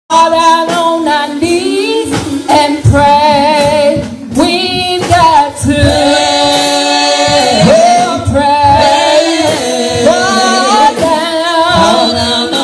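Women singing a gospel song into microphones, with long held notes that waver in vibrato.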